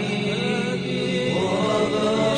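Background vocal chanting in a choir-like manner, with long held notes.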